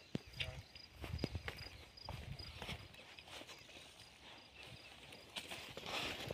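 Quiet footsteps on a dirt field path: soft, irregular thuds and scuffs of someone walking.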